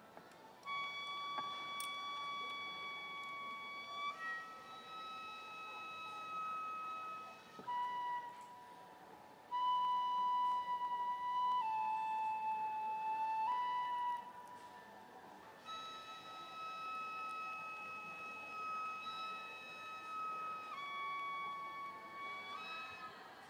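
A Japanese transverse bamboo flute playing slow, long held notes that step between a few pitches, with a short break about a third of the way in.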